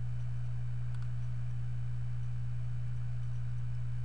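A steady low hum, strong and unchanging, with one faint click about a second in.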